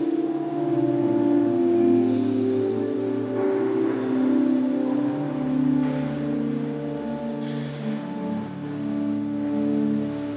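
Pipe organ playing sustained chords that change slowly, with a deep pedal bass entering about halfway through. Two faint brief knocks or rustles are heard under it.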